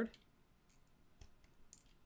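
A few faint, scattered clicks of a computer mouse and keyboard, after the last syllable of a spoken word right at the start.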